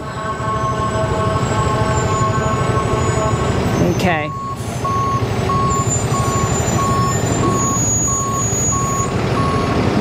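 A vehicle's reversing alarm beeping, a single tone about twice a second, starting about four seconds in, over steady traffic and wind noise.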